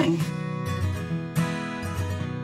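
Background music: strummed acoustic guitar chords, a fresh chord struck about every second.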